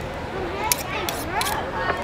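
A knife clicking and scraping three times against avocado in a stone molcajete, short and sharp, over a background of voices.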